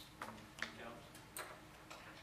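A few faint, sharp clicks and ticks, about four in two seconds, over a soft murmur of voice.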